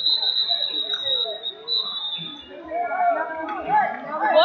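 Referee's whistle: one long, high-pitched blast lasting about two and a half seconds, with a brief dip partway through, stopping the action on the mat. Crowd chatter in the gym continues underneath.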